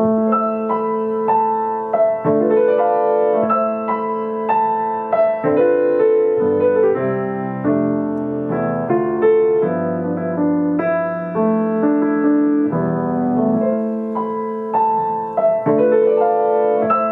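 Grand piano played solo: a slow, even succession of notes and chords over a sustained low note, a new note struck roughly every half second to second.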